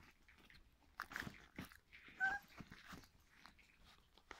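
Young puppies squirming and mouthing, with soft rustling and small chewing clicks, and one short high squeak from a puppy a little past the middle.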